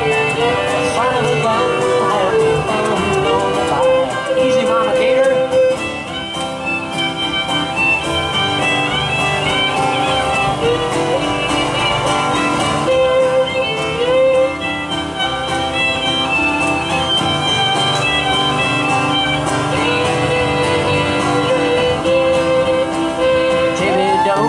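Live country band playing an instrumental break: a fiddle carries a sliding melody over strummed acoustic guitar and drums.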